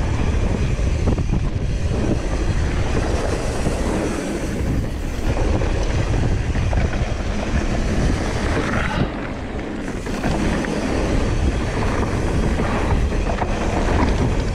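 Wind buffeting the microphone over the continuous rumble and rattle of a mountain bike riding a dirt trail. It eases briefly about nine seconds in.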